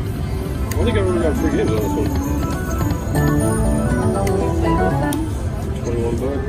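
Video slot machine playing its electronic game music and win sounds: gliding tones about a second in, then a run of short stepped notes, over a steady hum of casino background noise and chatter.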